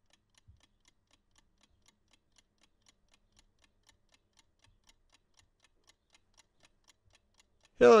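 Mechanical analogue chess clock ticking faintly and evenly, about four ticks a second.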